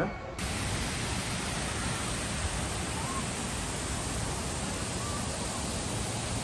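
Steady rush of a waterfall pouring over rocks, an even noise that starts abruptly about half a second in.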